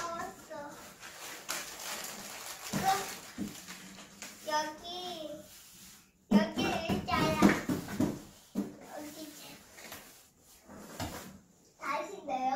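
A young child talking in short phrases, over rustling and light knocks of cardboard being handled and fitted together.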